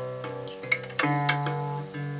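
Acoustic guitar playing chords, with a fresh chord struck about a second in and left ringing.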